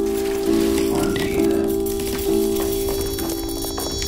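Slow piano music, sustained notes changing about once a second, over a steady hissing, crackling noise.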